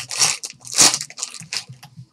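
Foil wrapper of a hockey trading-card pack crinkling as it is torn open by hand, in a few short noisy bursts, the loudest a little under a second in.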